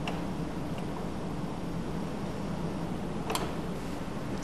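Steady hiss with a few light clicks and one sharper click near the end, from a gloved hand working the pressure-regulating valve knob on an air-driven high-pressure hydraulic pump.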